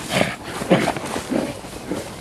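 A person running past hard through dry leaf litter, panting and grunting, with about four heavy breaths and footfalls in two seconds.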